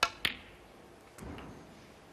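Snooker shot: the cue tip strikes the cue ball, then a sharp click of ball on ball about a quarter of a second later. About a second after that comes a fainter click with a soft low knock.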